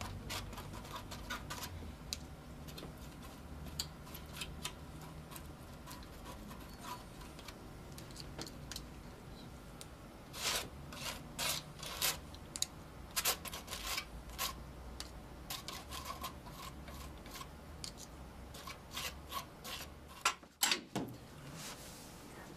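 Brush strokes rubbing and scrubbing across a painting surface: quick, irregular strokes, busiest in bursts about halfway through and again near the end.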